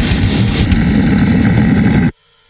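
A loud, dense, distorted rumble with no beat, heaviest in the low end, closing out a death metal/grindcore track. It stops abruptly right at the end.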